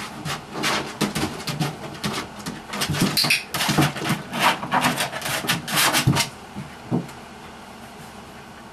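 Border Collie puppy scrambling on a hard plastic video-game rocker chair: a quick run of knocks, clicks and scrabbling paws on the plastic as the chair rocks on the carpet, stopping about six seconds in.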